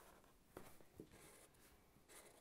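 Near silence, with the faint scratch of Sharpie markers drawing lines on paper and two soft ticks about half a second apart.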